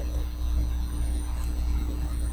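Steady low electrical hum with a thin higher steady tone, from the recording setup.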